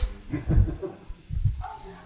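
Soft, brief chuckles from a few people at a table, trailing off in short bursts.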